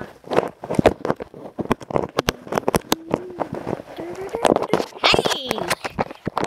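Rapid clicks, knocks and rubbing of a phone camera being handled close to its microphone, with a brief drawn-out voice sound rising in pitch in the middle and more voice near the end.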